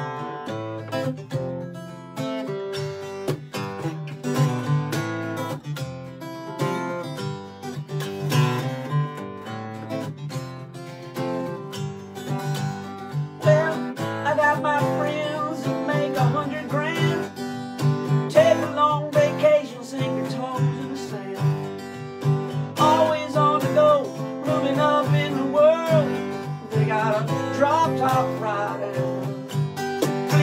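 Acoustic guitars strumming and picking the instrumental opening of a country-folk song, with a second, smaller plucked string instrument alongside. From about halfway through, a wavering melody line comes in above the chords.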